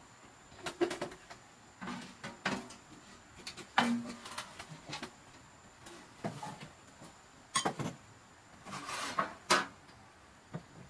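Ceramic bowls, cups and a large metal tray being picked up and set down on a wooden table and shelf: a series of separate knocks and clinks, about eight spread across the stretch, one a little before four seconds followed by a brief ring.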